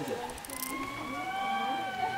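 Lemurs calling together: several long, held tones at different pitches overlap, each drifting slowly in pitch.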